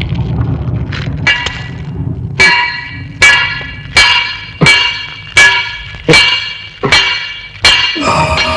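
A hammer striking hot metal on an anvil: eight loud ringing clangs, evenly spaced about three-quarters of a second apart. They follow a low rumble.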